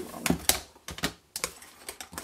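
Plastic ink-pad cases clicking and knocking as they are handled and set down on a work mat: a quick, irregular series of about six sharp taps.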